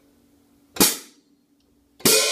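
A single sharp hit on a pair of 14-inch Zildjian Z Custom hi-hat cymbals (1015 g top, 1480 g bottom) about a second in, dying away within about half a second.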